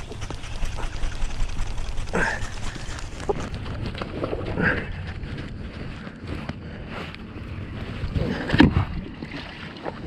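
Handling noise from a chest-mounted camera: jacket fabric brushing over the microphone and wind on the microphone while a bass is landed from a kayak, with scattered knocks against the boat, the loudest a little past eight seconds in.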